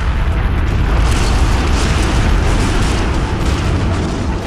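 Car crash: a 1959 Chevrolet Bel Air and a modern Chevrolet Malibu colliding head-on in an offset frontal crash test. The loud noise starts suddenly and carries on as one continuous deep, rumbling crash sound, without separate bangs.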